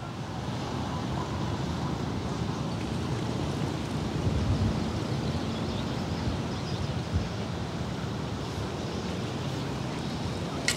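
Wind rushing and buffeting on the microphone outdoors, a steady noise with small gusts.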